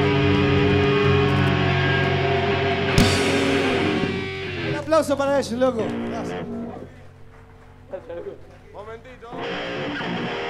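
Live heavy-metal band holding its final chord on electric guitars, cut off by a closing hit about three seconds in; the chord rings and fades. Shouting voices and amplified guitar noise follow.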